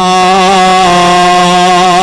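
A man's voice through a microphone, holding one long drawn-out chanted note in the melodic style of a religious sermon.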